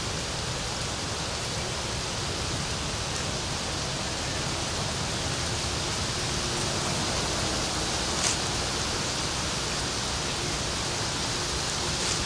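Steady wind rumbling and hissing on the microphone, with a single short click about eight seconds in.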